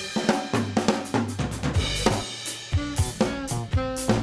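Live indie band playing an instrumental passage: drum kit with snare, kick drum, hi-hat and cymbal in a steady groove over bass guitar and electric guitar.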